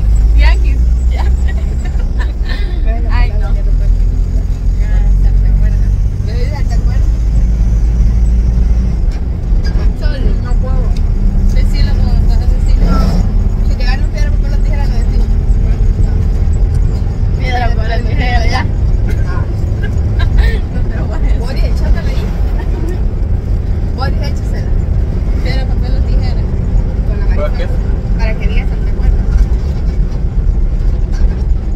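Steady low rumble of a bus's engine and running gear, heard from inside the passenger cabin, with people's voices over it.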